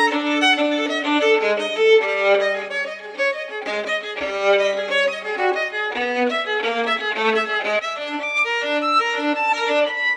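Solo violin, bowed, playing a quick line of short notes over a few held lower notes.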